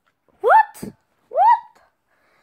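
A young child's voice giving two short squeals about a second apart, each rising sharply in pitch, with a brief low thump between them.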